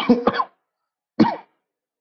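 A man coughing: a quick double cough at the start, then a single cough about a second later.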